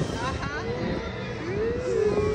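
People's voices over a steady background rumble, with a long, drawn-out low vocal sound in the second half.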